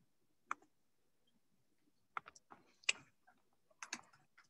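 Faint, scattered clicks of a computer keyboard and mouse being worked: a single click about half a second in, a quick run of clicks between two and three seconds, and more near the end.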